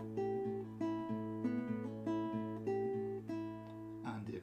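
Nylon-string acoustic guitar played fingerstyle: a slow blues pattern on an A chord, a thumbed bass note on the open fifth string ringing under single treble notes, some of them hammered on. The notes come about two or three a second.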